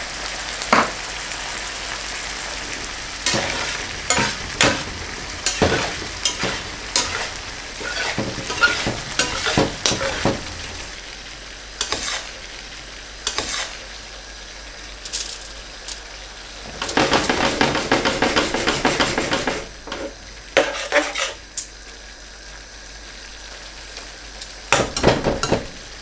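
Chicken frying in butter in a wide, flat steel karahi, sizzling steadily, while a spatula scrapes and clinks against the pan as it is stirred. The stirring is busiest a few seconds in and again past the middle, with quieter sizzling between.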